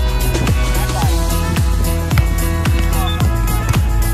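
Upbeat dance-style background music driven by a steady kick drum, about two beats a second.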